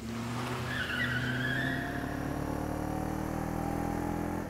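Motorcycle engine running steadily, with a brief high squeal about a second in.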